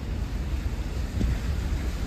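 Wind buffeting the microphone as a steady, uneven low rumble, mixed with the running noise of a slowly driving pickup truck on a wet road.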